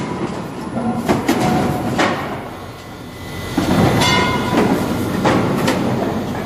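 Firewood packing machinery running with a continuous rattle and irregular knocks. It dips briefly, then grows louder again from about three and a half seconds in, with a faint whine.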